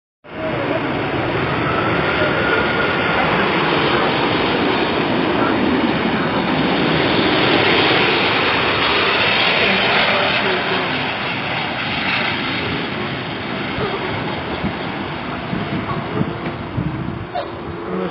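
Airbus A380 airliner passing low overhead on final approach: a loud, steady jet-engine rush that builds to its loudest about eight seconds in and then slowly eases off, with a faint high whine over it in the first few seconds.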